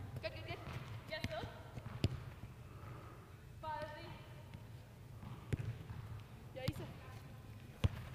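Soccer ball struck by passes on artificial turf: a handful of sharp kicks, a second or more apart, with short calls from players between them.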